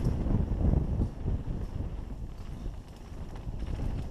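Mountain bike descending a rough dirt trail at speed: a low rumble of tyres on dirt with a run of irregular knocks and rattles from bumps. Loudest in the first second.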